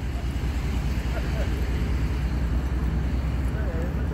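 Steady low rumble of idling truck engines, with a constant low hum underneath.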